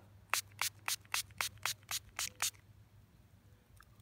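Hand-pump spray bottle squirting water onto a coin held in a wet palm to rinse the dirt off: nine quick squirts, about four a second, stopping about two and a half seconds in.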